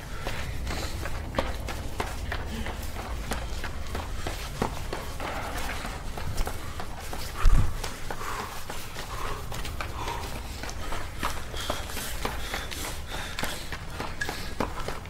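A person running up concrete stairs, footfalls in quick succession, recorded on a handheld camera. One loud thump about halfway through stands out above the steps.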